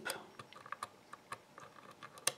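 Faint, irregular metallic clicks and ticks of a thin pick working the pins of a DOM euro-cylinder dimple lock held under tension, the pick catching the pins at their tips to avoid oversetting them.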